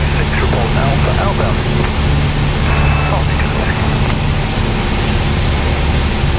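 Piper PA-28's piston engine and propeller droning steadily in cruise, heard from inside the cockpit, with no change in power.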